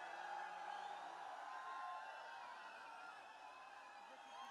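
Faint crowd of fans cheering and calling out, many voices overlapping at once.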